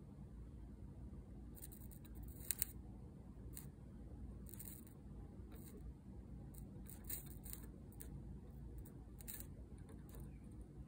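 Faint scraping and ticking of a soldering iron tip and solder wire against the pins of a surface-mount op amp on an adapter board, in short scattered strokes over a low steady hum, with two sharper ticks about two and a half seconds in.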